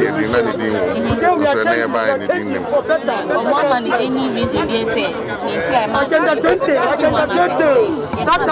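Several people talking at once in a close crowd: steady overlapping chatter, with no single voice standing out.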